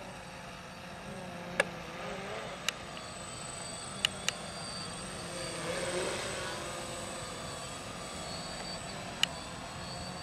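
Quadcopter drone's propellers whining in flight, the pitch of its motors wavering, getting louder toward about six seconds in. A few sharp clicks come through it.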